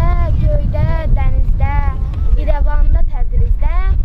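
A child's high, sing-song voice going on in short rising and falling phrases, over heavy wind rumble on the microphone.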